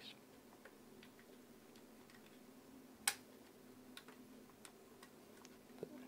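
A single sharp click of the Moskva 5 folding camera's leaf shutter firing as the body-mounted shutter release is pressed, about halfway through. Faint small handling ticks come before and after it.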